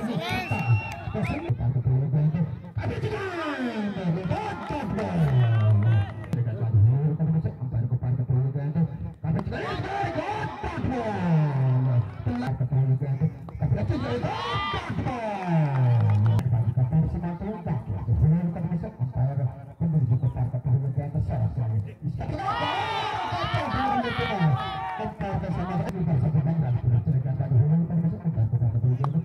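A man's voice talking continuously in long sing-song phrases that swoop up and down in pitch.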